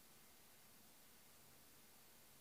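Near silence: faint steady hiss of the recording's background noise.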